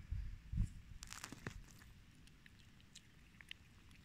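A cat eating raw meat and chicken from a stainless steel bowl: faint chewing and biting with a few short, sharp clicks and crunches in the first second and a half, then only faint ticks. A low rumble sits under the first second.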